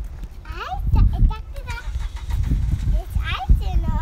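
High children's voices speaking briefly, about half a second in and again near the three-second mark, over a low rumble.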